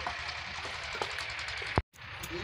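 Steady outdoor background noise with a few faint ticks. Near the end, a sharp click and a split second of dead silence where the recording is spliced.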